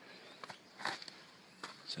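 A few faint, irregular footsteps and scuffs on leaf litter and undergrowth, with short crackles of brushing through vegetation, as a person walks down a slope; a word is spoken right at the end.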